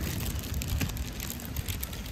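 A table knife cutting through a crisp-crusted, chocolate-filled madeleine resting on a paper bag: many small crackles and crumbly crunches with paper rustling.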